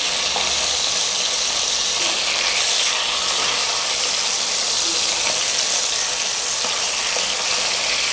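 Masala frying in a pan, a steady sizzle throughout, stirred with a wooden spatula.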